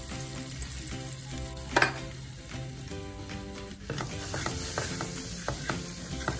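Butter sizzling in a frying pan, with one sharp clink about two seconds in. From about four seconds in, a spoon stirs the flour into the butter, scraping and tapping against the pan in quick strokes.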